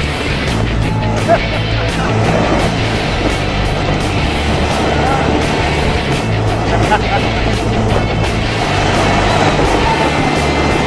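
Flying roller coaster train running along its steel track at speed, a steady loud rumble with wind rushing over the microphone.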